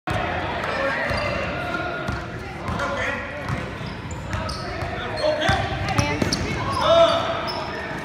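A basketball bouncing repeatedly on a gym floor during play, with sneakers squeaking near the end and players' and spectators' voices in the gym.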